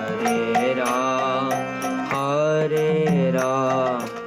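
Devotional kirtan chant: a voice sings a wavering melody over sustained harmonium chords, with a mridanga drum beating a steady rhythm.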